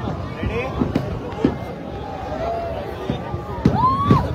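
Aerial fireworks going off in a few sharp bangs, several close together near the end, over the chatter and shouts of a large crowd.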